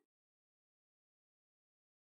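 Complete silence: the audio track is digitally silent.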